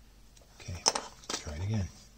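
A man's short wordless grunts or hums, twice, while working cells into a plastic battery pack. A sharp click a little before the middle is the loudest sound, with a second click just after.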